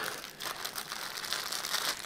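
Thin clear plastic bag crinkling as hands grip and pull at it, with many small crackles throughout.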